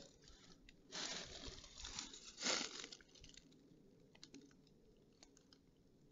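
Faint crunching and rustling from movement on dry ground cover for about two seconds, starting about a second in, then a few faint clicks.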